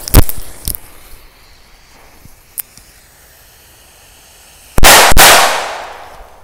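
Small firecrackers going off: a sharp bang just after the start, a few small pops, then two loud bangs in quick succession about five seconds in, trailing off in a fading hiss.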